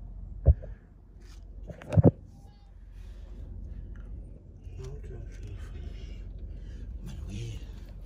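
Sharp knocks over a steady low rumble: a single loud knock about half a second in and a quick double knock about two seconds in.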